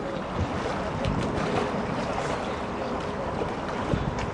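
Oars working in the water and knocking now and then in the rowlocks of a small wooden rowing boat, with wind noise on the microphone.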